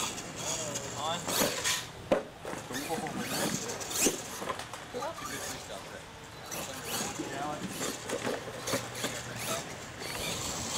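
Radio-controlled monster truck driving on a dirt track, with sharp knocks about two and four seconds in, over the indistinct talk of people close by.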